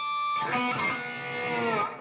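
Electric guitar (Charvel USA San Dimas) playing raked pinch harmonics, the squealing 'crazy sound' of at least two harmonics ringing at once. A high squeal carries in and is struck again about half a second in, and the ringing harmonics slide down in pitch near the end.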